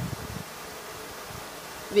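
A steady, quiet buzzing hum under room noise, in a gap between spoken phrases.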